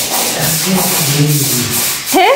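Stiff-bristled long-handled brush scrubbing a wet tiled floor, the bristles rasping across the tiles in repeated back-and-forth strokes.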